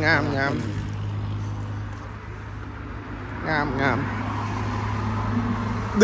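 A steady low hum from a running motor or engine, heard under short spoken exclamations.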